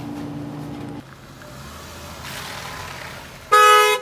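A car horn gives one short, loud toot near the end.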